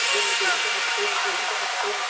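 Breakdown of a psytrance track with no kick drum or bass: a loud hissing white-noise wash over a short synth note repeating about four times a second.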